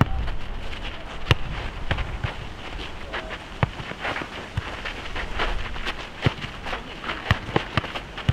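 Futnet ball being kicked and bouncing on a hard asphalt court during a rally, heard as sharp irregular knocks about once a second, along with players' footsteps.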